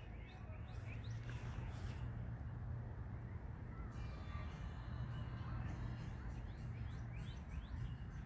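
Outdoor background with a low steady rumble and a few short, high bird chirps, a cluster in the first second and another near the end.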